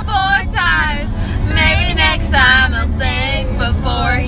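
A young woman and a girl singing together, with held, sliding notes, over the steady low rumble of a car's cabin.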